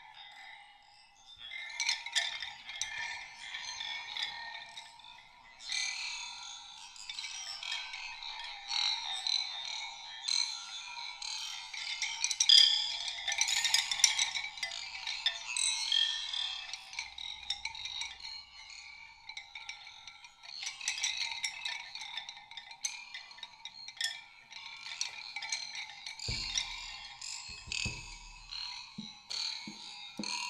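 Live experimental sound score: a dense, irregular texture of high clicking, tinkling and chime-like ringing with almost no bass, and a few low thumps near the end.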